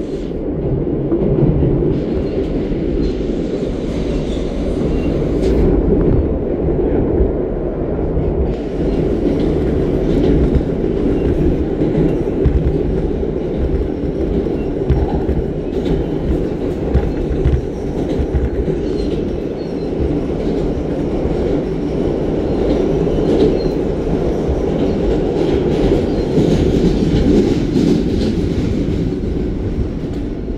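R160 New York City subway car running through a tunnel, heard from inside the car: a loud, steady rumble of steel wheels on rail, with many sharp clicks throughout.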